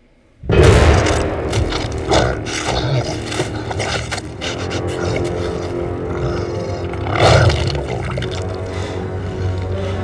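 Film-score music cutting in suddenly and loudly about half a second in. Over it are the snarls of a werewolf tearing into plastic-wrapped packs of raw meat, with louder peaks about two and seven seconds in.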